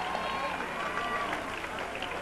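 Audience chatter and murmur with a few scattered claps, as the applause for the introduced couple dies down.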